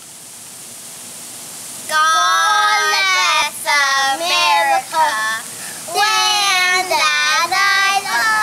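Young boys singing loudly in long held high notes, starting about two seconds in, with short breaks between phrases. Under it runs a steady hiss of bubbling hot-tub water.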